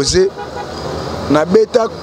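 A man talking into a handheld microphone in short bursts, with a pause of about a second in the middle filled by a steady background hiss.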